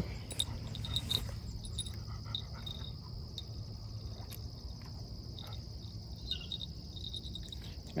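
Steady high-pitched chirring of insects, with a few faint metallic tinkles and clicks in the first seconds as a small fishing bite bell is handled and clipped onto the rod line.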